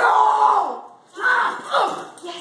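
A man yells in two loud, wordless bursts about a second apart while a dog is on the bite.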